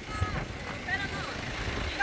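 Faint voices of people talking at a distance over a low background rumble.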